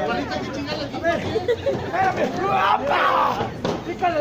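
Crowd of spectators shouting and chattering with overlapping voices, the loudest burst of shouting a little before three seconds in.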